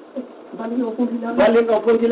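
A man's voice speaking in a public address. It is quieter for the first second or so and louder from about halfway through.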